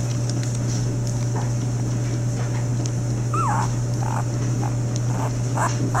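Newborn Lagotto Romagnolo puppies, five days old, whimpering in a string of short, high squeaks, the first and longest about three and a half seconds in, with more following roughly every half second. A steady low hum runs underneath.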